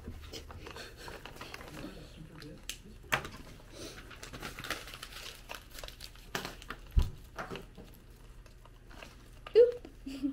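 Tissue paper crinkling and rustling as it is handled, with scattered small crackles and a single knock about seven seconds in.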